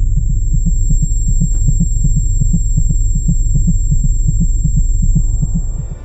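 Comedic sound effect: a deep, rapidly pulsing bass rumble, about seven throbs a second, under a steady high-pitched ringing tone. It gives way to music near the end.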